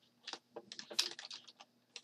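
About a dozen quick, irregular clicks and taps on a computer's keys or buttons as handwritten work is erased from a digital whiteboard; the loudest comes about a second in.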